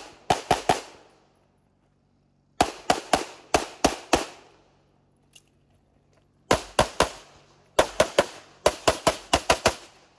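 Canik Rival 9mm pistol fired in fast strings, shots a quarter-second or so apart. There are four strings in all, with pauses of a second or two between them. The first string ends about a second in, the next two bring about six shots and then four, and the last and longest, about ten shots, ends just before the close.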